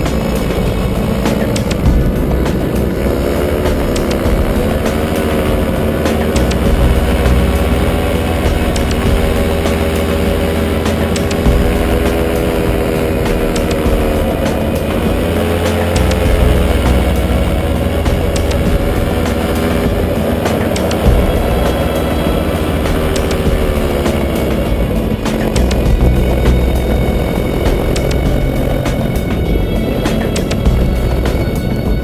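Paramotor engine and propeller running in flight, its pitch dipping and rising again a few times as the throttle is eased and reopened.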